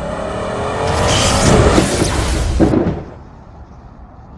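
Car engine accelerating, its pitch rising, under a loud rushing noise. The sound cuts off abruptly about three seconds in.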